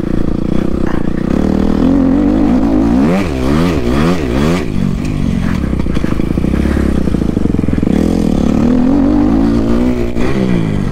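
Kawasaki dirt bike engine running hard under load. About three seconds in, its pitch swings up and down about four times in quick succession as the throttle is worked. It then levels off and climbs again near the end.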